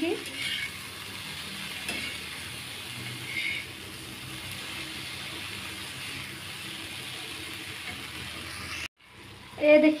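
Julienned carrots, potatoes and peas sizzling in oil on a flat iron tawa while being stirred with a steel spatula: a steady frying hiss that cuts off suddenly near the end.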